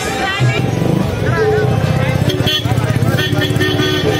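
Busy fair soundscape: crowd voices and chatter mixed with music playing, over a steady low rumble.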